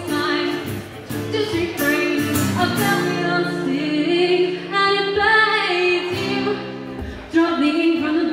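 A woman singing live, accompanying herself on a strummed acoustic guitar, with a long held note in the middle.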